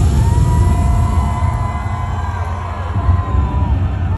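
Live concert music heard from within the crowd: a heavy bass beat kicks in suddenly at the start. Over it sounds one long held high note that ends shortly before the end.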